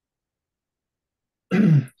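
A man clearing his throat once, about a second and a half in, a short low rough sound after a stretch of silence.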